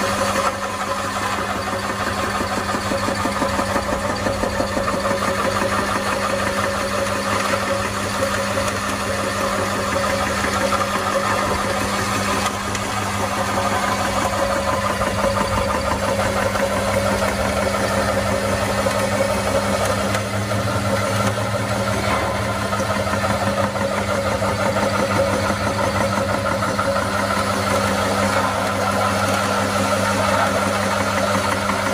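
Electric meat-and-bone extruder running steadily under load, its motor humming and its auger pressing damp feed mash through a fine die plate to make feed pellets.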